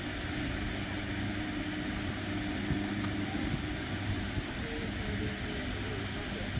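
A steady low machine hum with no change in pitch, and a few faint knocks.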